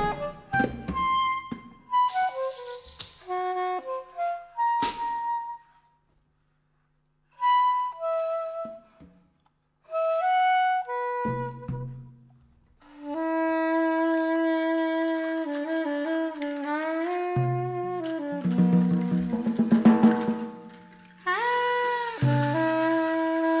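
Improvised jazz on soprano saxophone, electric bass and drum kit: the saxophone plays short broken phrases over drum strokes and bass, stops for about a second and a half, then plays long held notes, and the drums grow busier near the end.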